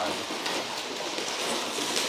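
A large cardboard box sliding across the floor, a steady scraping hiss of cardboard.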